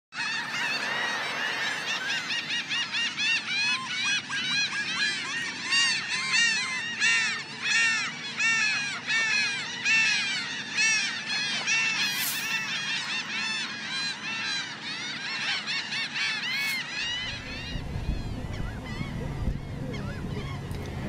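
A large flock of laughing gulls calling over one another in a dense, continuous chorus of short arched notes. About seventeen seconds in, the calls stop and a low steady rumble takes over.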